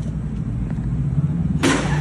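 Street background with a steady low hum, and a sudden short, loud rushing burst about a second and a half in.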